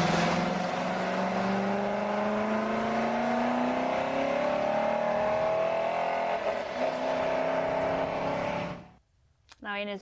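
Race car engine pulling away, its note rising steadily for about six seconds, then dipping and running steadier until it cuts off about nine seconds in.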